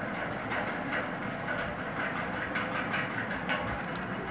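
Steady background noise with faint, irregular ticks.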